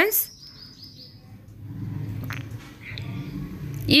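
A kitchen knife cutting a green bell pepper on a wooden chopping board: a low scraping and crunching of the blade through the pepper, with a single knock of the blade on the board a little after two seconds in. Before it, in the first second or so, a small bird chirps several times in the background.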